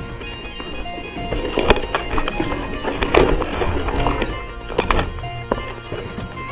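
Background music over the rattle and sharp knocks of a YT Industries Capra mountain bike rolling down a rocky trail, with a few hard hits as it rides over the rocks.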